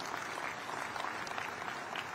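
Large rally crowd applauding: a steady, even wash of clapping.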